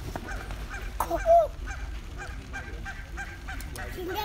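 Canada geese honking on a pond: a flock giving a steady run of short calls, with one louder honk about a second in.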